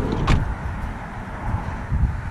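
A VW campervan's sliding side door shutting, one short knock about a third of a second in, over a steady low wind rumble.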